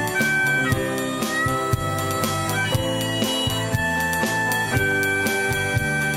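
Harmonica playing a slow melody of long held notes that slide into one another, over band accompaniment with guitar and a steady beat.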